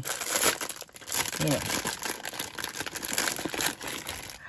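Clear cellophane bag crinkling in the hands as it is opened, a dense run of small crackles.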